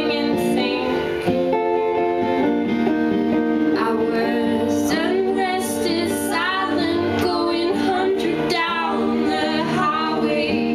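Live acoustic guitar strummed under a woman's singing, the voice bending and wavering in pitch over sustained chords.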